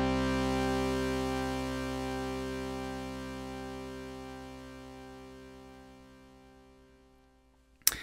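A sustained analog synthesizer chord from the Moog Subharmonicon, held after the sequence stops, fading evenly to silence over about seven seconds, with a slight slow wavering in its upper tones.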